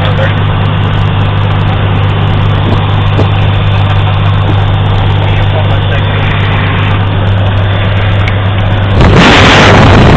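Small propeller aircraft's piston engine running steadily with a low hum, heard through an open jump door as the plane rolls along the runway. About nine seconds in, the sound jumps to a louder rushing noise, with wind and propeller wash hitting the microphone.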